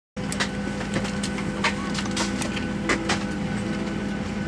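Steady hum of an airliner cabin, a low drone with a few steady tones in it, with scattered light clicks and knocks close by.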